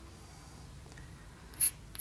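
Chalk faintly scratching on a blackboard as a formula is written, with one short click near the end.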